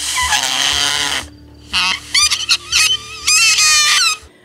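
A burst of two-way radio hiss for about a second. Then a run of wavering, goose-like honking calls.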